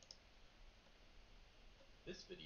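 Near silence, with a single faint computer-mouse click at the very start.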